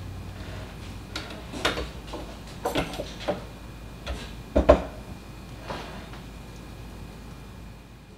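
A serving spatula knocking and scraping against a ceramic plate and a cooking pan while mash is dished out: a run of short clacks over a few seconds, the loudest about halfway through.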